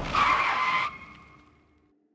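A short, high tyre screech lasting under a second. It cuts off abruptly, and a faint tail then fades away.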